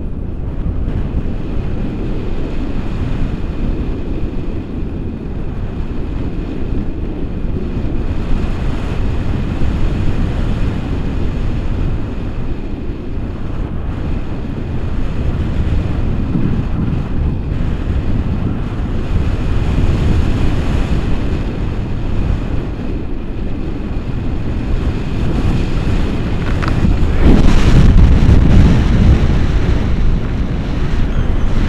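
Wind rushing over the camera microphone in paraglider flight: a steady, gusty low buffeting that swells louder near the end.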